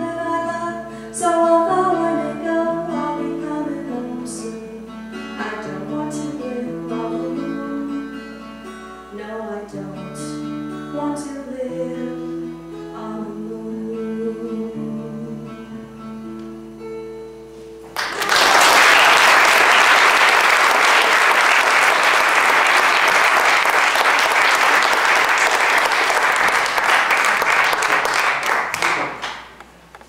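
Closing bars of a song: a woman singing, with sustained strummed notes on an acoustic guitar. About 18 seconds in the music stops and audience applause starts suddenly. The applause is louder than the song and lasts about eleven seconds before dying away.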